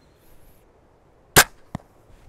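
An 850 lb steel-bowed windlass crossbow is loosed about one and a half seconds in: one sharp, loud crack as the string drives a 159 g crown bolt forward. A second, quieter knock follows about a third of a second later as the bolt strikes the compacted-straw target.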